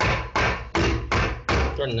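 A round metal cake tin full of chocolate cake batter being rapped on the counter, five sharp knocks about every 0.4 s, to level the batter and knock out air bubbles before baking.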